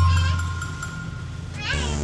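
Dramatic film score: a low sustained drone, changing about three-quarters of the way through to a new, fuller sustained chord, with a brief high wavering cry just before the change.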